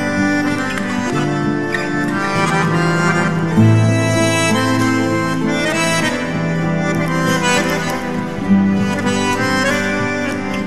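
Live band playing an instrumental passage with long held notes and no singing.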